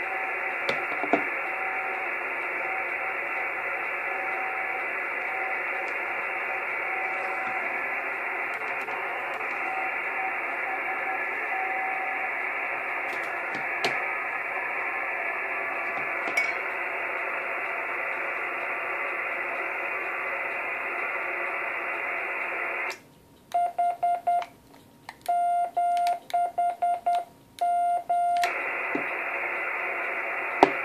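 A 2-metre amateur radio transceiver on SSB gives a steady, band-limited receiver hiss, with a faint tone drifting in and out of it. About 23 seconds in, the receiver goes quiet and Morse code is sent as a clear, high beeping sidetone in short and long elements, before the hiss comes back.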